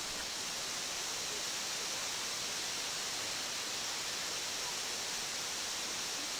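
Waterfalls and a stream rushing far below, heard as a steady, even hiss.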